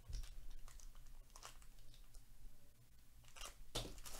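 Shiny foil wrapper of a trading-card pack being torn open and crinkled by gloved hands: a few short rips and crackles, the loudest near the end.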